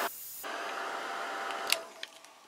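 Handheld craft heat gun blowing with a steady hiss and a faint motor whine, drying freshly sprayed shimmer ink on cardstock. It drops out briefly at the start, then runs again and is switched off with a click near the end.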